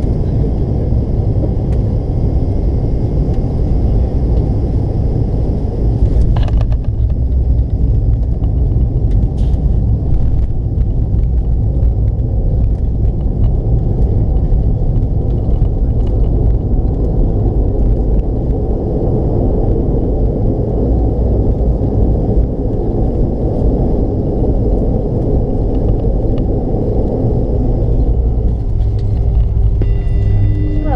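Cabin noise inside a McDonnell Douglas MD-88 airliner rolling along the runway after landing: a loud, steady low rumble of the engines and wheels. About six seconds in there is a brief knock, and a higher hiss drops away.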